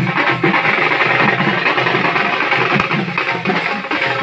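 Hand-beaten double-headed barrel drums (dhol) playing a steady festive beat.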